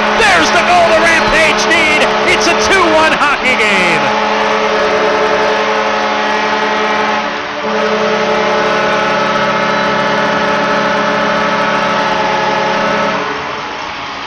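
Arena goal horn signalling a home-team goal, sounding in two long steady blasts over a cheering crowd: the first starts about four seconds in, and the second follows after a brief break and stops about a second before the end. Loud excited shouting over the cheering comes before the horn.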